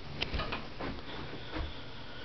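A few soft, irregular taps and clicks over a steady background hiss.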